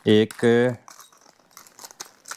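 A spoken word, then faint crinkling of plastic packaging with small clicks as the phone holder's mounting parts are handled.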